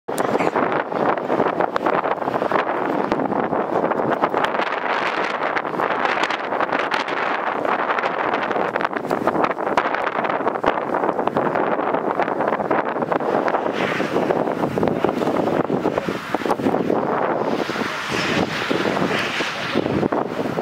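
Wind buffeting the camera microphone: a loud, steady rushing noise that flutters irregularly.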